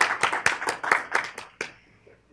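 Audience applauding at the close of a lecture: a small group clapping with separate, irregular claps that die away about a second and a half in.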